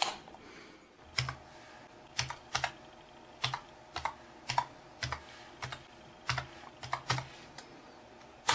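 A wall light switch clicks once, then keys on a computer keyboard are typed in irregular bursts of clicks, a few keystrokes at a time, as a web address is entered.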